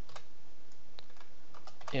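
Computer keyboard typing: a handful of light, scattered keystrokes.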